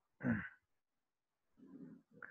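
A man's brief voiced sound with falling pitch, like a sigh, about a quarter of a second in, followed by quiet and a faint low murmur near the end.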